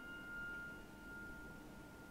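The closing chord of a grand piano dying away, one high note ringing on faintly and fading out over a low room hiss.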